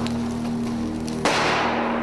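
Documentary soundtrack played through a hall's loudspeakers: a steady low music drone, with a sudden loud burst about a second in that fades away over most of a second.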